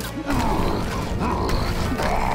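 Cartoon sound effects of a large monster smashing into a building's concrete wall: a sharp crack, then a loud, continuous creaking and crumbling of breaking masonry, with a second crack part-way through.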